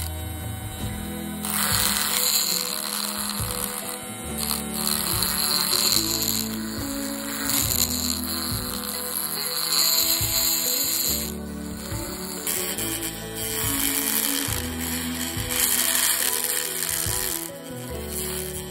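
Background music over a small handheld rotary tool grinding a diecast model's metal and 3D-printed wheel arch, its high hiss pausing briefly about two-thirds of the way through.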